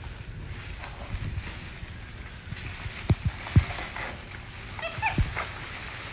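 Plastic carrier bag rustling and crinkling as a small monkey rummages inside it, with a few soft thumps. A brief squeaky chirp comes just before the five-second mark.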